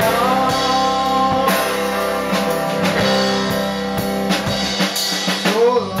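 Live band playing: electric guitars over a drum kit, with a long held note near the start and a sung "oh" at the very end.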